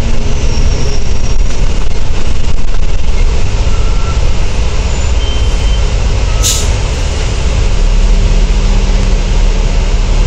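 Volvo B10TL double-decker bus's Volvo D10A285 diesel engine running under way, heard from on board as a loud low rumble. There is a short sharp hiss about six and a half seconds in, and the engine note grows louder from about eight seconds on.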